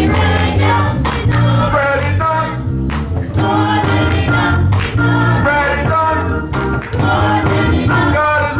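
Church choir singing a gospel song with a live band: voices in harmony over a strong bass line and a steady drum beat.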